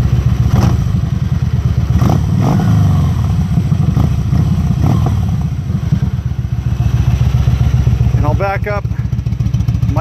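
The V-twin of a Kawasaki Vulcan 1700 Classic LT idles through aftermarket exhaust pipes. It is revved briefly a few times in the first five seconds, then settles back to idle.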